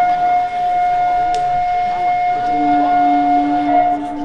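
A long end-blown flute holds one steady high note for about four seconds, stopping just before the end; a second, lower held tone comes in a little past halfway.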